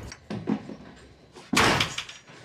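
A house front door, with a few soft knocks early on and then a loud, sharp bang about one and a half seconds in as the door is pushed open or shut.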